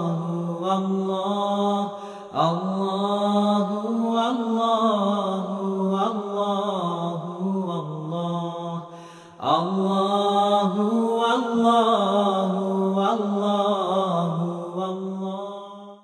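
Islamic devotional vocal chanting without instruments: long, bending sung phrases over a steady held vocal drone. The phrases break off briefly about two seconds in and again about nine seconds in, and the chant fades out at the very end.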